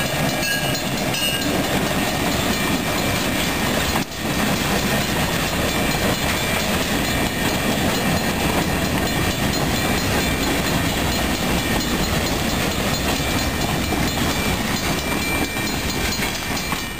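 Diesel-hauled freight train passing close by at a grade crossing: the locomotive goes by, then a string of freight cars rolls past with a steady rumble and clatter of wheels on the rails. There is one brief dip in the sound about four seconds in.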